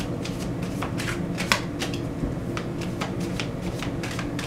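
A deck of oracle cards being shuffled by hand: an irregular run of soft card slaps and flicks, one louder slap about one and a half seconds in, over a steady low hum.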